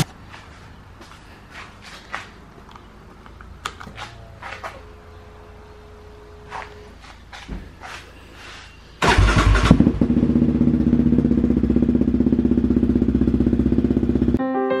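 Yamaha Raptor 700 ATV's single-cylinder four-stroke engine cranked and started about nine seconds in, then idling steadily with a fast even beat. Before it starts there are small clicks and knocks of switches and handling on the quad, and a brief faint hum.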